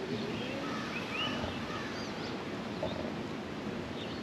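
Several short bird chirps and twitters over steady outdoor background noise.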